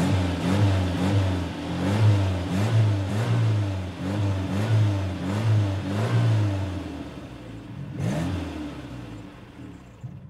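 A car engine revved in quick repeated blips, about two a second, easing off after about seven seconds. One more rev comes near eight seconds, then it fades away.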